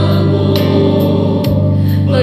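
Choral music: a choir singing a slow Christian hymn in held chords, with the chord changing about one and a half seconds in.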